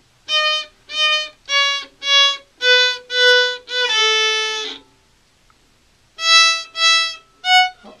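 Violin bowed by a beginner in short, separate strokes: seven notes stepping down in pitch, mostly two of each, the last held about a second. After a pause of over a second come three more short notes, the last a little higher.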